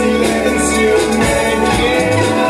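A male voice sings along with a strummed acoustic-electric guitar, amplified live through a PA.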